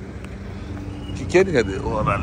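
A voice speaks briefly in the second half over a steady low rumble of outdoor vehicle noise.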